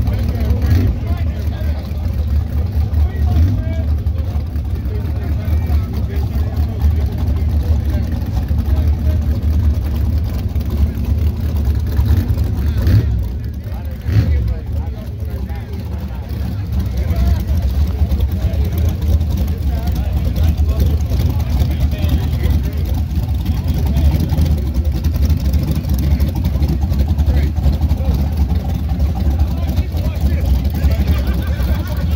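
A drag car's engine idling and moving at low speed, a steady low rumble, with voices in the background.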